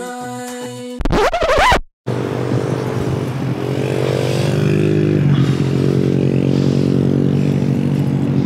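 Background music ends about a second in with a short rising sweep. Then a car engine revs hard and steadily while a drive wheel spins in soft sand, spraying it, because the car is stuck. The engine's pitch climbs a little and then holds.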